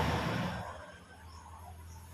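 A man's brief cough right at the start, fading within about half a second, followed by a faint, steady low hum.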